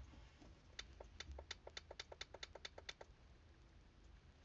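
A quick, even run of about a dozen faint light clicks, roughly five a second, starting about a second in and stopping about three seconds in.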